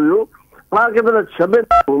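A man talking, pausing briefly near the start, with a very short telephone keypad beep cutting in near the end.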